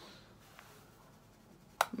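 Mostly quiet, with a faint click about half a second in, then a sharp plastic click near the end as a pressed-powder compact is snapped shut after powdering.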